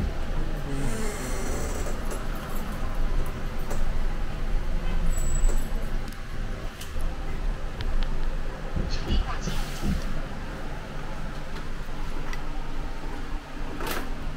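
Cabin noise inside a city bus as it drives through traffic: a steady low rumble, with a few light clicks and rattles about nine to ten seconds in.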